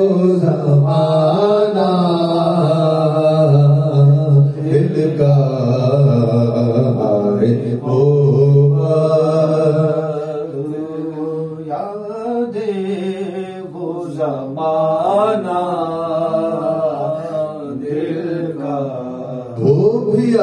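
A man's voice chanting a devotional melody into a microphone in long, held, wavering notes. It goes on without a break and is a little quieter in the second half.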